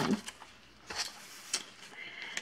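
Soft rustling and a few small, separate clicks from hands handling a cross-stitch piece and its fabric.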